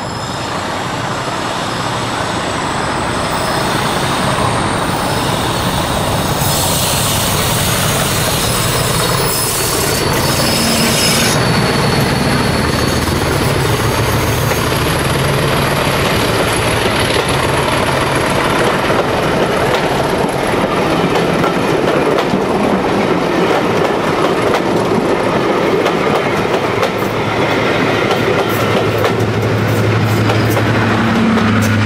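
English Electric Class 40 diesel locomotive hauling a passenger train past at close range: its engine noise builds loudly as it approaches and passes, then the coaches roll by with continuous wheel-on-rail noise and clickety-clack over the rail joints. Near the end, the engine of a second diesel at the rear of the train comes in.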